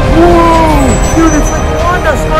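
A drawn-out shouted cry of about a second, rising and then falling, then a shorter cry, over a dramatic music score and a heavy rumbling effect for a superpower battle.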